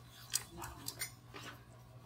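Sheets of paper handled close to a microphone: a few short, crisp rustles and clicks over a low steady hum.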